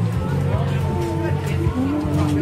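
Open-air market ambience: people talking among the stalls, with music playing in the background and a steady low hum.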